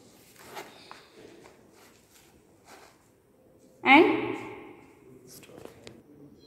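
Faint, scattered rustling as a sheet of paper holding freshly sieved wet granules is handled and lifted to gather them, then a short voice sound about four seconds in.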